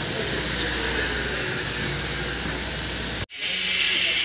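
Steady machinery noise with a faint high whine that drifts slightly in pitch. About three seconds in it drops out abruptly for an instant, and a louder, hissier running noise follows.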